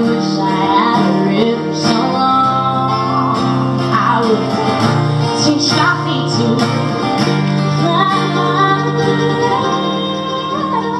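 Live acoustic duo playing a slow folk song: a steel-string acoustic guitar holds sustained low chords while a second string instrument carries a melody that slides between notes.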